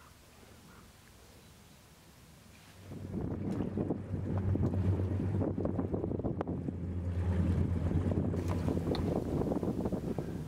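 A low, steady engine drone mixed with wind buffeting the microphone, coming in suddenly about three seconds in. Before that there is only faint background.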